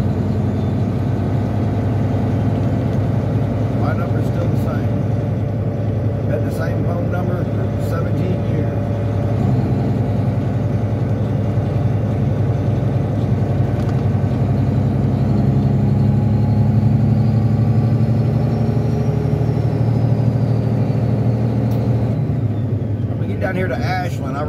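Semi-truck engine running steadily while driving, heard from inside the cab as a continuous low drone. It grows a little louder about two-thirds of the way through.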